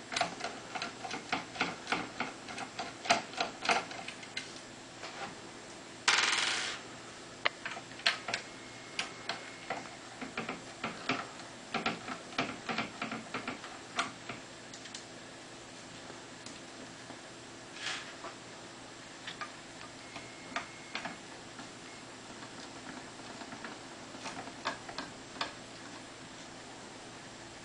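Small metallic clicks and ticks of a T10 hexagon screwdriver working screws out of a CD mechanism's mounting. The clicks come irregularly, thick in the first half and sparser later, with a brief scrape about six seconds in.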